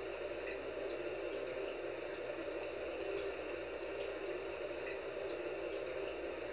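Steady background hiss and faint hum of a quiet room, with no distinct events: room tone during a pause.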